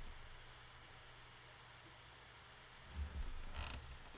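Quiet room tone with a low hum; about three seconds in, a soft, brief noise of a person moving at a desk.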